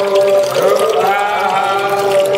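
Voices chanting in long, held notes, with milk being poured and splashing into a metal basin underneath.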